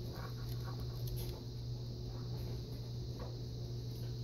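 Low steady hum with a few faint clicks and scratches of fingers handling small parts: the reverse-light wire plug being worked loose from a model locomotive's decoder.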